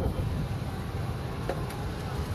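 Wind buffeting a handheld phone's microphone outdoors, a low, uneven rumble, with a faint click about one and a half seconds in.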